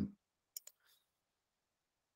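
Two quick computer mouse clicks about half a second in, with a fainter click just after, then near silence.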